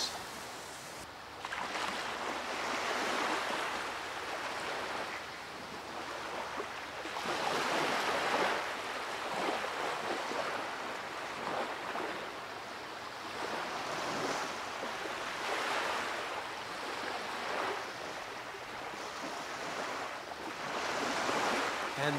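Small lake waves washing onto a sandy beach, the surf surging and fading every few seconds.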